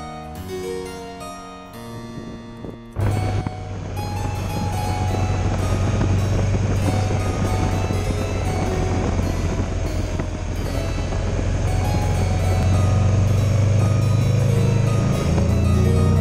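Harpsichord music for the first three seconds, then a sudden cut to a Buell Ulysses motorcycle's V-twin engine running under way, with wind rushing over the microphone. The engine note rises near the end as the bike speeds up.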